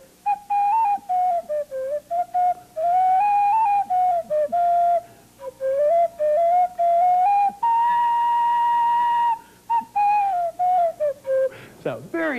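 A handmade boxwood recorder playing a short tune of quick, stepping notes, with one long held high note about eight seconds in, ending on a lower note.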